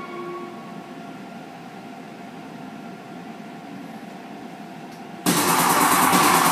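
The karaoke backing track fades out in the first half-second, leaving a steady low hum from the room's sound system. About five seconds in, the karaoke system's speakers abruptly start loud electronic music.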